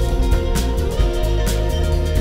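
Live band playing instrumental music, with a six-string electric bass line prominent in the low end over drums, guitar and keys.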